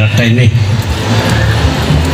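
A man speaking into a microphone over loudspeakers, breaking off about half a second in for a pause; a steady low hum and room noise fill the pause.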